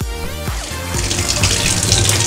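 Kitchen faucet running, the stream splashing over hands and a doll's hair into a stainless-steel sink. Electronic dance music plays over the first half, and the sound of the water takes over about a second in.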